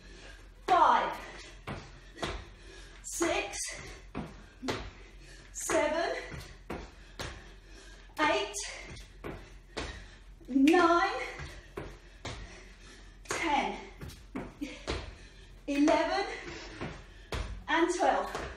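Burpees done on a tiled floor: sharp slaps and knocks of hands and trainers hitting the floor, with a short vocal call or breath from the exerciser about every two and a half seconds, in time with each rep.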